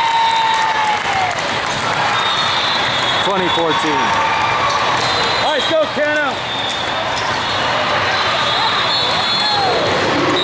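Steady din of a big hall full of volleyball games: many voices talking, with balls thudding on the court floor and a few short shoe squeaks around the middle.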